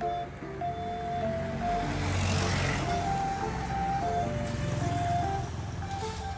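Background music with a simple melody, over which a road vehicle passes, its noise swelling to its loudest about two to three seconds in and then fading.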